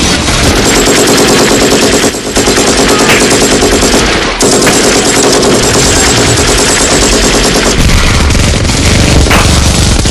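Machine-gun sound effect: a loud, rapid, even stream of automatic fire, broken by two short gaps about two and four seconds in.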